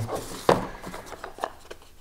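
Small white cardboard boxes being handled: one sharp knock about half a second in, then a few light taps and a faint rustle of card.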